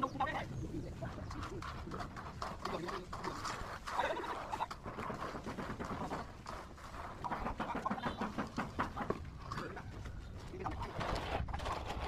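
Birds calling, with faint voices in the background.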